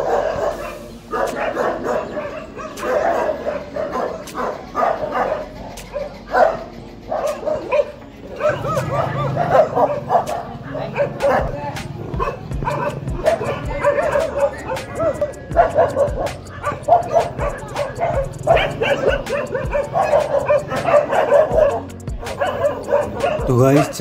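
Several stray dogs barking as they fight, with a voice and music running underneath.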